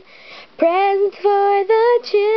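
A girl singing solo and unaccompanied: a soft breath at the start, then held sung notes from about half a second in.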